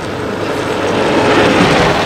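Gravity-powered soapbox cart rolling past on asphalt. Its wheel and road noise rises as it approaches and is loudest near the end, over a faint steady hum.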